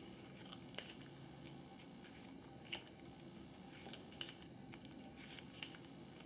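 Faint handling of card stencil sheets: a few short, sharp ticks and light rustles as the sheets are picked up and swapped, over a quiet room hush.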